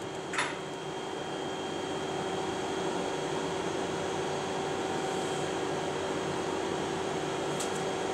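Steady background hum and hiss with a faint low tone, like room ventilation or an idle amplified speaker. A short knock comes about half a second in, and a couple of faint clicks near the end.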